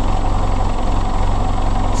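Willys L134 Go Devil four-cylinder flathead engine running steadily, heard close to the open end of the exhaust pipe, with an even low pulsing rumble. It is running with liquid-glass sealer in its cooling system to seal a leaking head gasket or crack, and it is putting smoke out of the exhaust.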